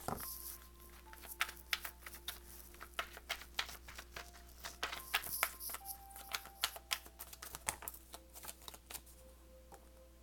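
A deck of tarot cards being shuffled by hand: irregular soft clicks and flutters of the cards slipping against one another. Faint held tones sound underneath.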